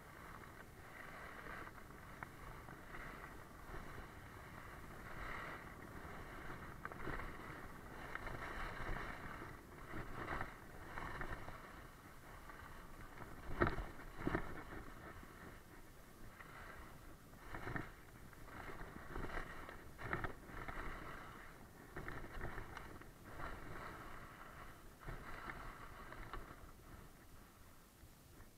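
Dull-edged skis scraping and chattering over icy, hard-packed snow, swelling with each turn every second or two. A sharp, louder clatter comes about halfway through.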